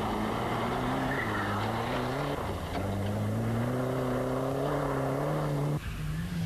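Rally car engine under hard acceleration on a dirt stage. The pitch drops at a gear change about two seconds in, then climbs steadily, and the sound cuts off abruptly near the end.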